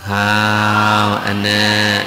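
Buddhist chanting in a low male voice, held on one steady pitch, with a short break for breath about a second in before the next held phrase.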